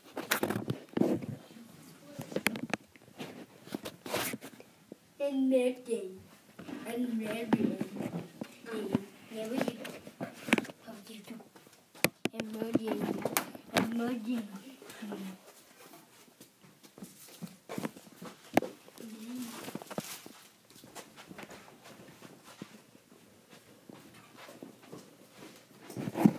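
Soft, wordless vocal sounds from a person, through much of the middle of the stretch, mixed with scattered bumps and knocks from the handheld camera being moved about.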